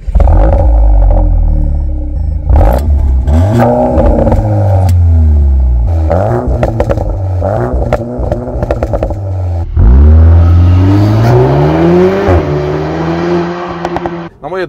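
Cupra Ateca 2.0 TSI turbocharged four-cylinder revved through its exhaust: a series of revs rising and falling, and a longer climb about ten seconds in that drops back near the end. Crackles and pops as the revs fall off.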